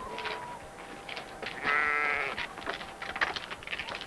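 A lamb bleats once about halfway through, a single wavering call lasting under a second.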